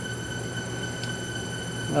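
Spintron rig running steadily: an electric motor belt-driving a Norton engine unfired at idle speed, about 1,000 to 1,100 rpm, with a steady hum. The engine is being held at idle for a long run to test a hard-welded cam follower for scuffing.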